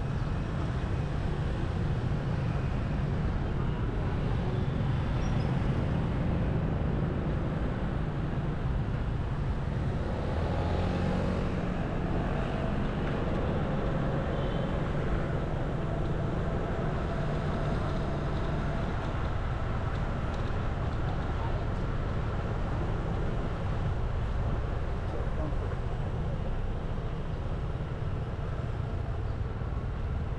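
Steady city street traffic, mostly motor scooters running, heard from a vehicle moving along with them.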